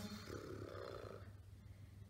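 A woman's faint breath through closed lips as she thinks, lasting about the first second, over a steady low room hum.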